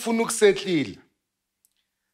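A man's voice drawn out on an exclamation ("oof") and trailing off with falling pitch, then about a second of dead silence.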